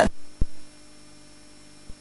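Pause in speech: faint, steady electrical mains hum with a brief low thump about half a second in.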